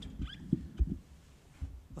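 Microphone handling noise: a few soft low thumps and some light rustling.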